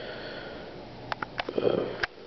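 A man sniffing through his nose close to the microphone, followed a little past one second in by a few quick mouth clicks and a brief voiced sound.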